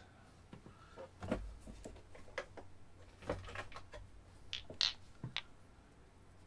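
Scattered clicks and knocks of a pair of steel Baoding balls being picked up and handled, with a few brighter, briefly ringing metallic clicks near the end.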